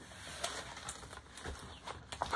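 Rustling and crinkling of a large rolled diamond-painting canvas sheet being unrolled and smoothed flat by hand, with several small crackles.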